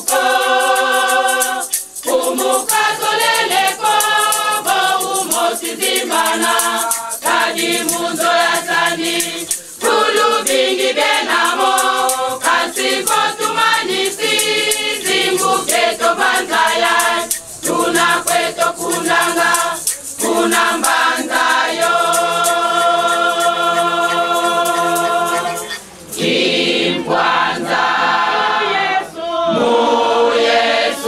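Women's church choir singing a hymn in harmony, with a tambourine jingling along to the beat. About two-thirds of the way through the voices hold one long chord, then go on singing.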